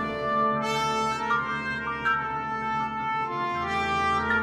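Wind band music led by brass, holding slow sustained chords that change every second or so.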